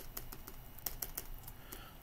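Computer keyboard clicking and tapping in a quick, irregular run of light clicks.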